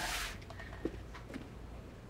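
Quiet room with a steady low hum. A short hissy rustle comes right at the start, followed by a few faint soft ticks about a second in.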